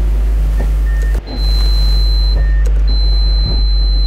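Honda CRX del Sol's electric targa roof mechanism working with the engine idling, the rear deck lid moving, while a high-pitched warning tone sounds twice, the second time for over a second. A knock comes about three and a half seconds in.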